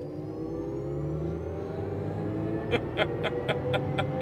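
Chevrolet Silverado EV RST's electric drive motors in a full-throttle launch in wide open watts mode: a motor whine climbing steadily in pitch over rising tyre and road noise. Near the end a rapid ticking starts, about four ticks a second.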